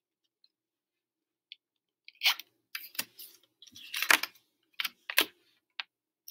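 Paper letter cards being picked up and set down on a wooden tabletop: a run of light taps, clicks and short slides starting about two seconds in.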